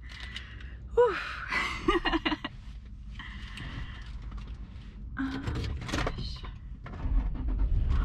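A woman laughing excitedly inside a car cabin, with light clicks and knocks of handling the car's controls. A low rumble builds near the end.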